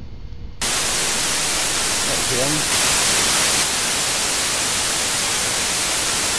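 Loud, steady static hiss like a detuned television, which starts suddenly about half a second in and swells slightly around three seconds in.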